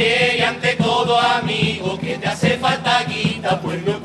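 A chirigota group of men singing together in unison, accompanied by Spanish guitar and a drum beating a steady rhythm.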